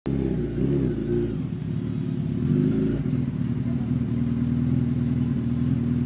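Suzuki Hayabusa's inline-four engine running, with a few quick throttle blips in the first second or so, then holding a steadier rev.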